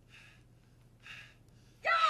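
Two short, faint breathy gasps about a second apart from a man straining to open hard plastic packaging, followed near the end by the start of a loud vocal outburst.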